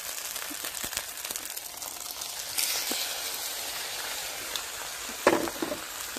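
Food sizzling in oil in a wok: a steady crackling hiss from a stir fry of rice and vegetables, getting louder about two and a half seconds in, with a brief louder knock near the end.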